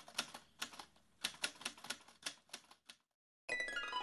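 Typewriter-style key clicks: a quick, uneven run of about fifteen strikes over three seconds, as intro sound design. After a short pause, a falling run of pitched notes starts near the end.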